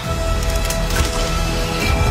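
Action-trailer sound effects: low rumbling with several sharp cracking, splintering hits in the first second, under a held music note, and a rising tone near the end.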